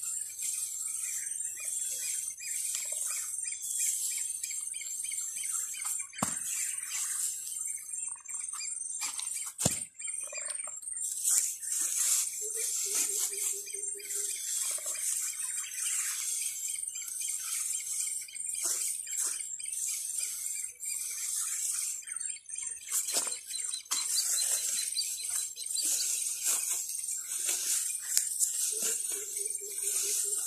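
Hands scraping and patting loose soil in short, scratchy rustles, over a continuous high-pitched chirping chorus. Two brief low tones sound, one around the middle and one at the end.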